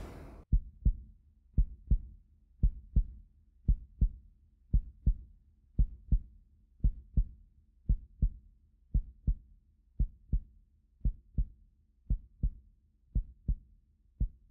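Heartbeat sound effect: pairs of short low thumps, lub-dub, repeating steadily about once a second.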